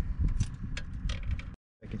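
Handling noise of a fish and tackle on a boat: a run of sharp clicks and light rattles over a steady low rumble of wind on the microphone. The sound cuts out completely for a moment near the end, just before a man starts speaking.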